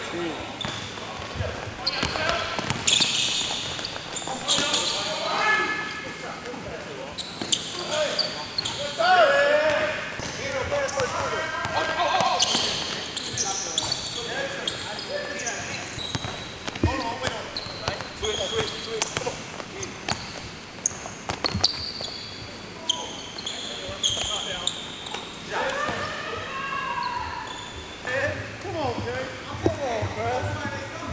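Basketballs bouncing on a gym floor in a pickup game, sharp repeated thuds scattered irregularly, with players' voices and calls in the hall.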